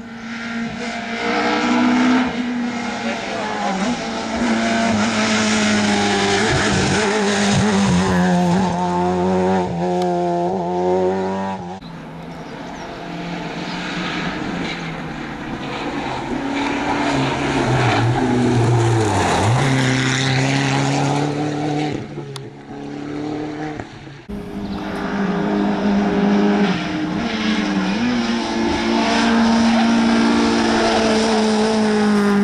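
Rally cars, among them a Seat Ibiza and a Citroën Saxo, driven hard past one after another on a tarmac special stage: engines revving up and down through gear changes and lifting off for the bends. The sound breaks off abruptly about 12 and 24 seconds in, where separate passes are cut together.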